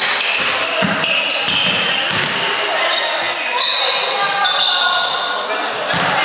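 Many voices chattering and echoing in a sports hall, with a basketball bouncing on the wooden court a few times.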